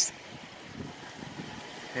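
Steady rain during a thunderstorm, heard as a soft, even hiss.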